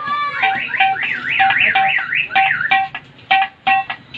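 Hand drumming on an upturned aluminium cooking pot, about three strokes a second, each stroke ringing with a short metallic note. Over the first two-thirds a high, warbling, siren-like tone zigzags up and down.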